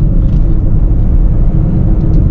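Inside the cabin of a moving Renault Scala: its 1.5-litre dCi diesel engine and road noise making a steady low rumble.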